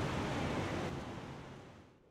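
Steady outdoor traffic noise, an even wash of passing vehicles, fading out over the last second.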